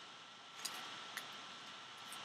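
Two faint, sharp clicks about half a second apart as baseball trading cards are handled, over a steady faint hiss.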